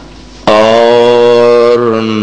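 A man's voice, amplified through microphones, begins a long held chanted note about half a second in, in the melodic style of Quranic recitation. Before that there is only low room noise.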